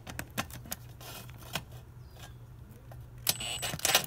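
Makita 18V cordless driver working a cross-head screw on a motorcycle's air filter cover: quick clicks and rattles of the bit in the screw head early on, then a short burst of the driver running with a high motor whine near the end. A steady low drone of a neighbour's string trimmer runs underneath.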